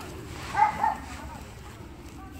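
A dog gives two short barks in quick succession, just over half a second in.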